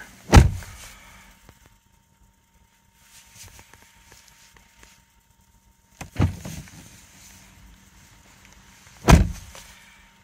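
Car door shutting with a solid thump about half a second in, on a Lexus NX450h+. Then the cabin is quiet apart from a few faint clicks, with another thump about six seconds in and a loud one near the end.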